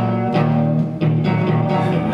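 Live band music, instruments playing a passage between sung lines with no voice, sustained low notes under a few struck accents.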